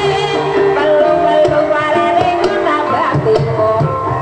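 Javanese gamelan ensemble playing, layered ringing metal tones over repeated hand-drum strokes.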